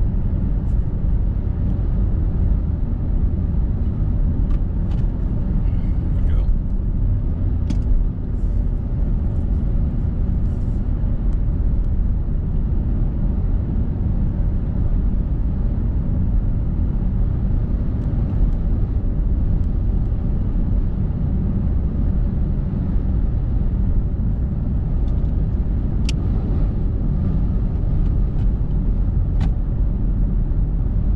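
Car driving at steady speed on a highway: a steady low rumble of engine and tyre road noise heard from inside the car, with a few faint ticks.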